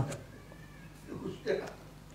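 A pause in a man's speech: low, steady room hum with two faint, brief pitched sounds a little past one second in and about one and a half seconds in.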